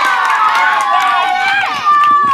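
A group of children shouting and cheering together, many high voices overlapping, loud and steady before dropping off near the end.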